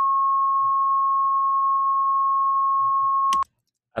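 A 1,000 Hz sine-wave test tone from a Pro Tools signal generator: one steady, pure pitch at constant level, cutting off suddenly near the end.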